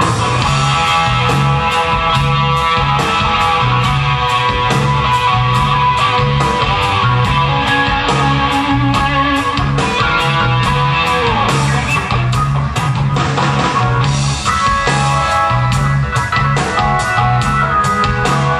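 Live rock band playing an instrumental passage: electric guitar over a pulsing bass line and drums keeping a steady cymbal beat.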